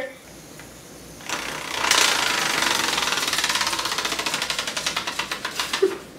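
A small mechanical toy clicking rapidly and evenly, about ten clicks a second, starting about a second in and slowly running down and fading over the next four seconds.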